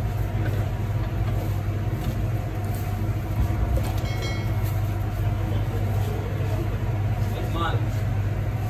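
Steady low hum of kitchen machinery that runs without a break. A short high ring, like a metal clink, comes about four seconds in.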